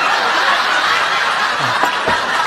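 Studio audience laughing, a steady wash of many people laughing at a flubbed line.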